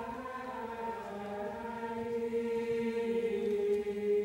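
Background choral music: voices holding long, slowly changing chords.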